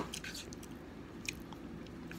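Close-up chewing and lip-smacking, with a sharp click at the start and a few lighter clicks of a fork against the plate as rice is scooped up.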